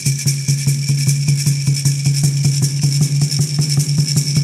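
Instrumental drum and rattle accompaniment with no singing: a drum beaten in a fast, even rhythm, its low tone ringing on between strokes, with a rattle shaken in time on every beat.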